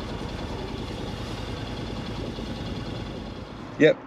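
A goods train of container wagons rolling past close by, a steady rumble and rush of steel wheels on the rails. It cuts off just before the end, where a man says "Yep".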